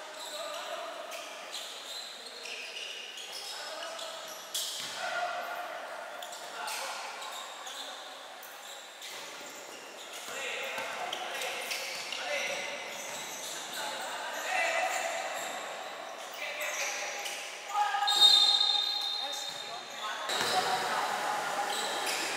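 A basketball bouncing on an indoor court with short knocks, mixed with players' voices calling out in a large reverberant gym, and a brief burst of high squeaky sounds about 18 seconds in that is the loudest moment.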